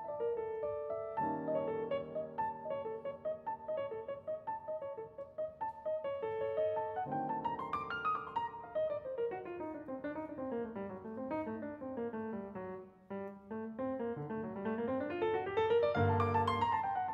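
Steinway grand piano played solo: repeated figures over sustained bass chords, then a long run of notes that climbs, sweeps down into the low register and climbs again near the end.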